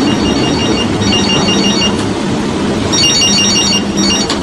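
An electronic telephone ringer trilling in bursts of rapid high beeps: two bursts, a pause of about a second, then two more. Under it runs a steady rushing background noise.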